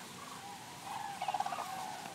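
Distant wild birds calling: a few short calls, then a quick run of calls a little over a second in.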